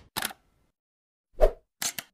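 Animated logo-intro sound effects: a brief sharp click just after the start, a louder pop with a low thud about one and a half seconds in, then two quick clicks near the end.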